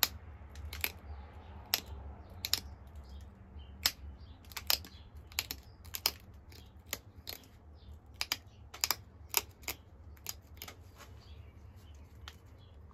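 Pressure flaking of a Flint Ridge flint point: a run of sharp, irregular ticks, about two a second, each one a small flake snapping off the edge under the flaker. It is the final edge-straightening stage of shaping the point.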